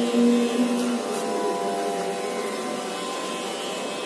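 A sung invocation in a Carnatic-style melody: one held note ends about a second in, then a pause between lines in which only faint steady tones and a low hum remain before the singing resumes.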